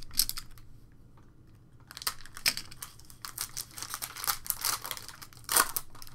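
Foil trading-card pack wrapper being torn open and crinkled by hand, a dense crackling with a short lull about a second in and the loudest crinkles near the end.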